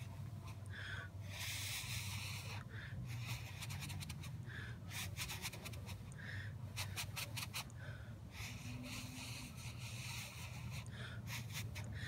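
Soft breathy blowing through pursed lips onto a freshly glued false eyelash strip, to dry the lash glue until it is tacky enough to apply. Two long gentle breaths of about two seconds each, one early and one past the middle, with faint small clicks between them.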